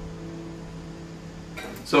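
Acoustic guitar chord left ringing after strumming stops, a soft sustained tone slowly fading away. Near the end a spoken word cuts in.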